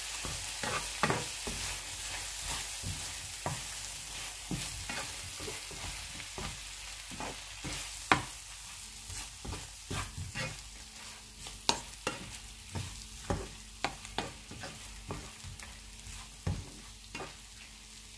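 Shrimp frying in butter and sambal in a nonstick pan with a steady sizzle, while a cooking utensil stirs and turns them, knocking and scraping against the pan every second or so, loudest about eight seconds in. The sizzle fades a little toward the end.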